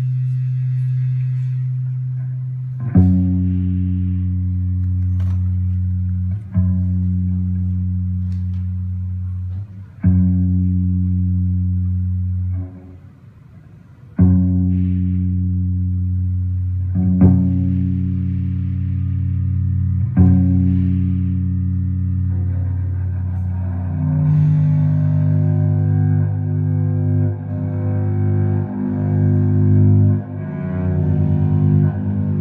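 Live drone music on a deep, amplified string instrument: low sustained notes, each starting with a sharp attack and then slowly fading, with a new note roughly every three seconds. The sound drops out briefly about halfway through, and in the last several seconds it thickens into a denser, bowed-sounding layered drone.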